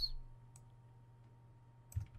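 A couple of isolated clicks from a computer mouse and keyboard while code is being selected and copied, over a faint steady low hum.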